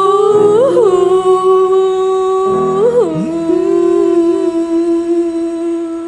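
A singing voice holding the song's long final note, with a short pitch turn about a second in and another about three seconds in, over a soft backing that slowly fades.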